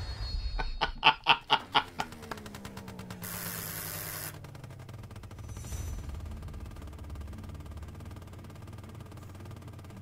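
Movie-trailer soundtrack: a quick run of about six loud pulses, then a slowly falling tone and a short burst of hiss, over a low steady hum.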